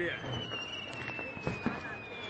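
Fireworks going off: a long whistle that slowly falls in pitch, with a few sharp pops in the second half.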